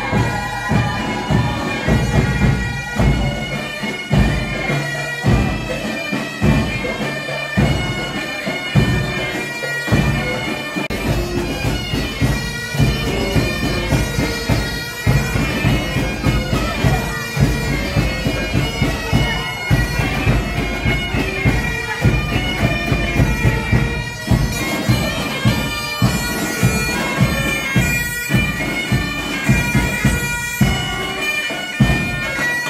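Scout pipe band playing bagpipes, their steady drones held under the melody, over a regular low drum beat.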